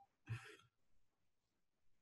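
A short sigh about a quarter second in, then near silence.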